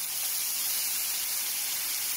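Steady hissing sizzle from a hot frying pan of browned salt cod, garlic and walnuts as a splash of liquid is poured in and turns to steam. The hiss swells slightly as the liquid goes in.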